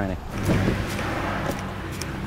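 Tire shine being sprayed over engine-bay plastics: a steady hiss that runs from about half a second in.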